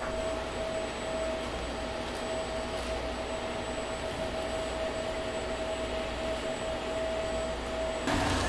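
Steady workshop room tone: an even hiss and low hum with a constant mid-pitched whine running under it.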